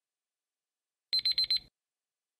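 Countdown timer alarm: four rapid high-pitched electronic beeps in about half a second, starting a little after the first second, signalling that the time for answering is up.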